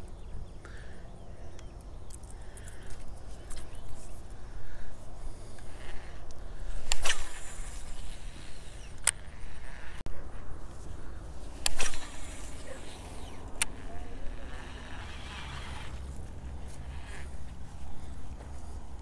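Wind rumbling on the microphone, with fishing rod and reel handling noise: two louder rushes about seven and twelve seconds in and a couple of sharp clicks.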